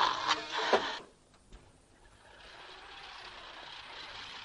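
Party noise of claps and voices cuts off about a second in. After a brief hush, a steady street-traffic ambience fades up and holds.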